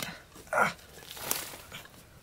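A dog barks once, short and sharp, about half a second in. A sharp click comes at the very start, and faint ticks and scrapes follow.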